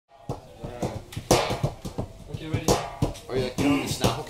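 Voices talking over scattered acoustic guitar strums and plucks, the instruments being played loosely rather than as a song.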